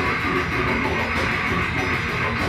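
Extreme metal music: electric guitars and drum kit playing without a break, loud and steady.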